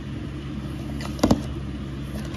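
Plastic DVD cases being handled, with a short cluster of clicks and knocks about a second in, over a steady low hum.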